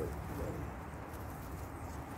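Quiet rustling of gloved hands digging in loose garden soil among potato plants, with a dove cooing faintly about half a second in.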